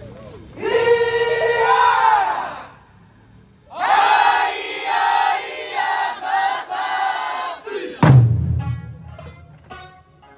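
Okinawan eisa dancers shouting in unison: two long drawn-out group calls, the second broken into several syllables. About eight seconds in, a heavy eisa drum strike comes in with a deep ringing boom, followed by lighter drum hits and voices.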